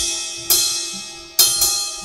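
Drum kit played between sung lines: crash cymbals struck about half a second in and twice close together near the end, each ringing out and fading, with low drum hits under the strikes.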